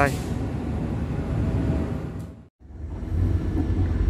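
Steady low rumble of passenger trains standing at a station platform. About two and a half seconds in it cuts off suddenly, and a steadier low hum from inside a passenger coach follows.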